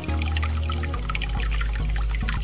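Aquarium water trickling and dripping in many small, quick splashes, over a steady low hum from running tank equipment that shifts pitch about a second in.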